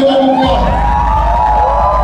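A siren sound effect played over the club sound system, its pitch sweeping up and down in overlapping arcs, with a heavy bass coming in about half a second in.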